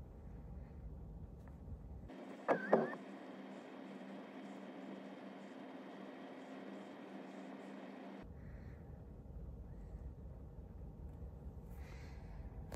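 Faint steady background hum, with a brief high chirp about two and a half seconds in.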